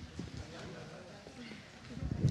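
Quiet hall room noise with a few soft low knocks and bumps, the kind made when a microphone is handled, and a faint murmur.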